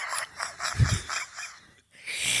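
Breathy, near-wordless laughter in short gasping pulses, with a soft low thud about a second in; the sound cuts out shortly before the end.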